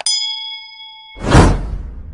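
A notification-bell 'ding' sound effect rings for about a second, then a loud burst-like effect sound swells up and fades away.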